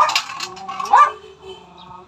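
Dog barking twice, about a second apart, during play. A steady whining tone holds after the second bark.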